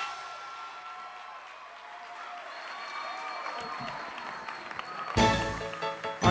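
Audience applause after a song, fading and fairly quiet. About five seconds in, loud music starts.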